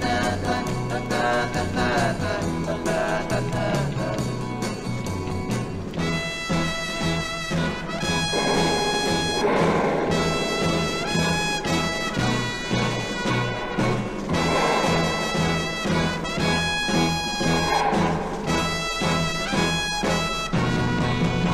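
Instrumental passage of a 1960s-style rock band recording: a trumpet plays long held notes over a pulsing bass line and drums.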